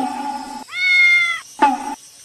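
A domestic cat meows once: one long, even call lasting under a second, dipping slightly in pitch at the end.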